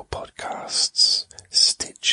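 A man's whispered speech, breathy, with sharp hissing s-sounds.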